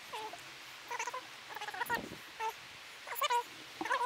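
A dog whining: short, high, wavering whimpers repeated eight or nine times, a few tenths of a second each.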